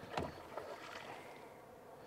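Quiet water noise along the side of a drift boat, with one short thump just after the start.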